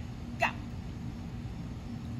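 One short shouted 'Go!', then a steady low background hum with no other sound.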